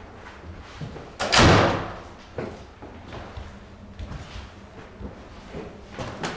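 A building door slams shut about a second in, with a short ringing decay, followed by a few lighter knocks.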